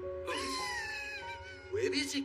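One long meow that slides slowly down in pitch, over held notes of background music. A short burst of voice follows near the end.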